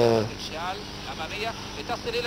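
The narrator's voice ends about a quarter second in. After that comes the faint voice of the original TV match commentary over steady stadium crowd noise from the football broadcast.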